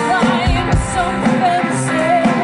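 Live rock band playing, with a singer holding wavering, vibrato notes over guitar, bass and a steady drum beat.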